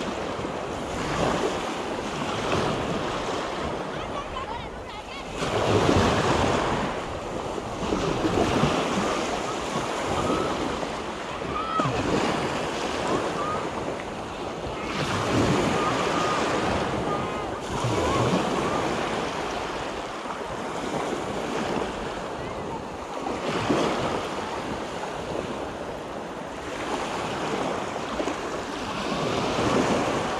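Small waves breaking and washing up the sand at the water's edge, swelling and fading every few seconds, with wind on the microphone.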